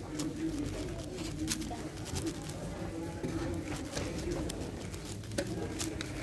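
A plastic 7x7 speedcube being turned quickly by hand gives an irregular run of light clicks and clacks. A low, wavering background sound runs underneath.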